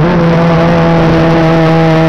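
VW Jetta Mk2 race car engine pulling hard at high revs, heard inside the stripped, caged cabin. The engine note steps up right at the start and then holds steady.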